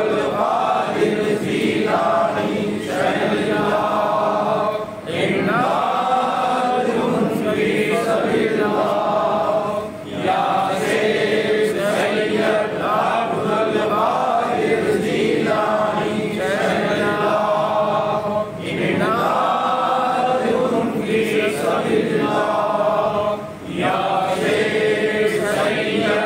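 Men's voices chanting Sufi zikr, a devotional phrase repeated over and over in a steady cycle, with short breaks every few seconds.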